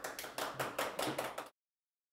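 A small audience clapping with quick, even claps that cut off suddenly about one and a half seconds in.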